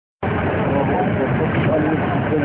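A steady rushing noise with people's voices faintly audible behind it, starting just after the very beginning.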